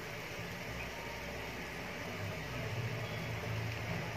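Steady background hiss with a low hum underneath, growing slightly stronger in the second half, with no distinct events.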